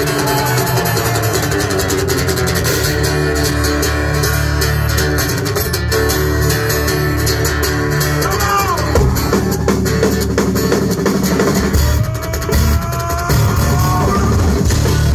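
Rock band playing live: acoustic guitar and electric bass with drums, heard from within the audience. A few notes slide in pitch a little past halfway and again near the end.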